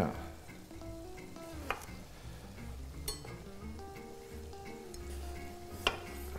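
A pan of chopped tomato, pepper and onion frying in oil, sizzling quietly and steadily. Three sharp knocks of a kitchen knife on a wooden cutting board come as an eggplant is sliced.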